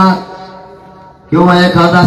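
A man's loud speech through a microphone, delivered in long, drawn-out held syllables in a chant-like rhythm, with a pause of about a second between two phrases.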